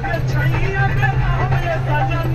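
Heavy vehicle's engine running with a steady low drone, heard from inside the cab, with a voice over it.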